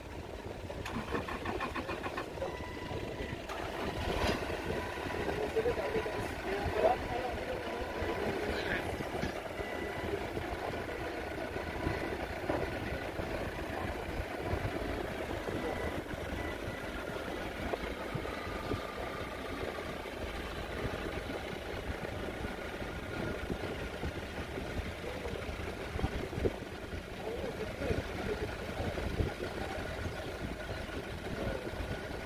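Clark C30 forklift engine running steadily as the truck is driven at low speed.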